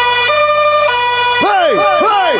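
Two-tone siren sound effect in a DJ mix, switching between a high and a low note about every half second. From about halfway it gives way to a rapid run of falling electronic zaps, about four a second.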